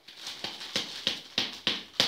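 Mealworm beetles and dry bedding tipped out of a plastic bowl into a plastic box: a dry rattling patter broken by about six sharp plastic knocks, roughly three a second.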